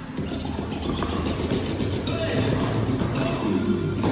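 Indistinct voices of several people talking over each other, with music playing underneath.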